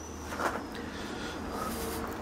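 Brief handling noise from gloved hands about half a second in, over a steady low hum and a faint high-pitched whine.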